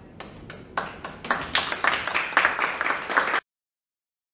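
Audience applause: a few scattered claps that quickly swell into full clapping, then cut off abruptly about three and a half seconds in.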